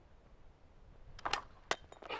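Hand-held clay target thrower whipped through a throw with a short swish, followed about half a second later by a single sharp clink.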